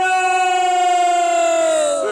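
A conch shell (shankh) blown in one long, steady note rich in overtones, its pitch sagging and falling away near the end as the breath runs out.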